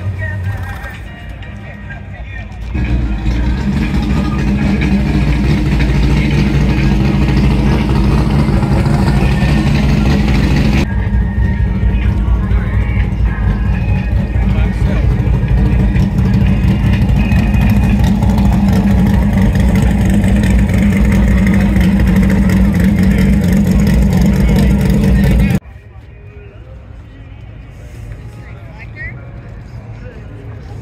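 Plymouth Duster's engine running loudly at a steady idle. It comes up about three seconds in and cuts off suddenly near the end.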